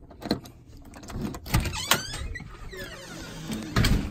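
A house door being opened: a series of knocks and clicks, with a short squeak about halfway through and a heavier knock near the end.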